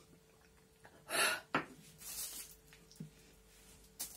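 A woman gasps and breathes out hard about a second after knocking back a shot, then a sharp click, a long hissing breath, and a short knock about three seconds in.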